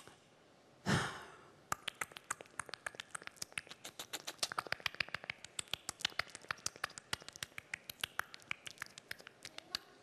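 A woman's tongue clicking: a long, rapid, irregular run of sharp mouth clicks, several a second, after a short breath about a second in.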